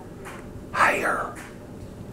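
A man's short, breathy mouth sound close to the microphone, starting suddenly a little under a second in and fading within about half a second.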